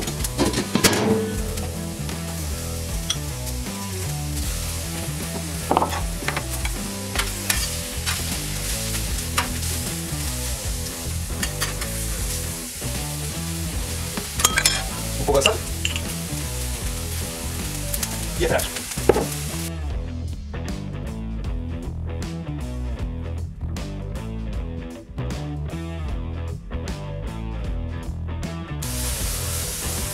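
Vegetables and sausage sizzling steadily on a hot stainless steel griddle plate over charcoal, with scattered sharp pops and crackles.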